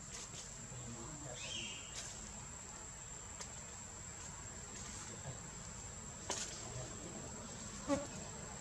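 Steady high-pitched drone of insects in the tree canopy, with a short chirp about one and a half seconds in and a few sharp clicks, the loudest near the end.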